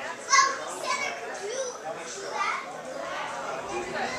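Indistinct voices of people talking, children among them, with a short loud high-pitched cry about a third of a second in.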